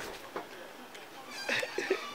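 A single high, meow-like call starting about one and a half seconds in, falling slowly in pitch.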